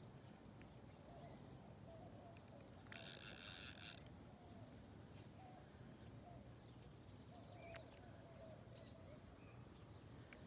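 Near silence with faint outdoor background, broken about three seconds in by a high-pitched buzz lasting about a second.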